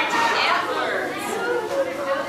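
Many young children talking and calling out at once, a babble of overlapping high voices.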